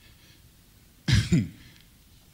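A man clearing his throat into a handheld microphone: one short two-part burst about a second in, against faint room tone.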